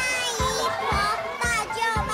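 A young girl's voice calling out names of relatives in Chinese (great-aunt, aunt), over background music with a steady beat of about two thumps a second.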